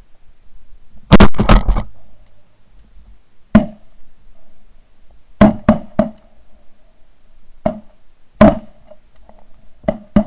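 A series of sharp, loud shot-like bangs, each with a brief ringing tone after it: a quick burst of about four about a second in, then single bangs and a fast triple every second or two.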